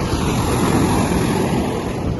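Loud, rough rushing noise of wind on the microphone and sea surf breaking on a sandy beach, rumbling and fluctuating.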